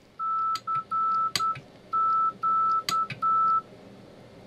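An Iambino Arduino CW keyer's side-tone speaker beeping Morse code "CQ" (dah-dit-dah-dit, then dah-dah-dit-dah) in one steady high pitch. The dits are keyed on a straight key and the dahs on a push button, with a few sharp clicks from the key and button.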